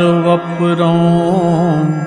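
A man singing a Kashmiri devotional vaakh in a slow, drawn-out line. A long wavering note near the end fades as the phrase closes.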